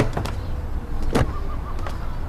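Low, steady rumble of a car on a city street, with a few sharp clicks and one louder knock about a second in.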